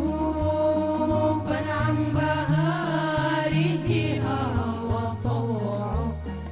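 Male vocal group singing an Arabic nasheed together in long, ornamented lines, accompanied by electronic keyboards playing a stepping bass line.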